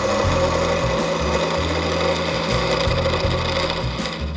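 Skewchigouge cutting a spinning wood spindle on a lathe: a steady hiss of the edge shaving the wood over the lathe's running hum.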